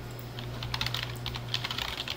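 Typing on a computer keyboard: a quick, irregular run of key clicks that starts about half a second in.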